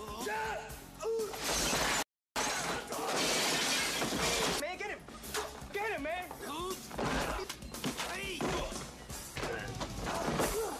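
Movie fight-scene sound effects: glass shattering and store goods crashing, with the longest burst of breaking from about two seconds in, over a film score.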